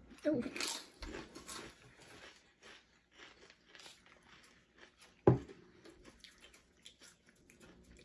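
Flamin' Hot Cheetos being crunched and chewed, the crunching densest in the first second or two and then thinning to faint chewing. A single sharp knock about five seconds in.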